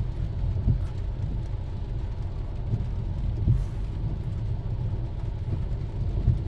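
Steady low rumble inside a car's cabin in the rain, with a few dull thumps, the loudest about a second in and about midway.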